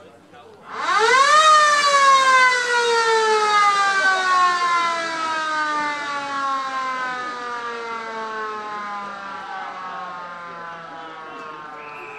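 Football ground siren sounding the start of the third quarter. It winds up to full pitch within about a second, then slowly winds down and fades over the next ten seconds.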